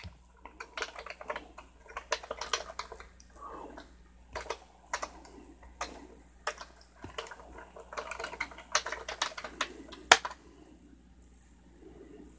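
Computer keyboard being typed on in irregular runs of keystrokes, with one louder key clack about ten seconds in; the typing thins out after it.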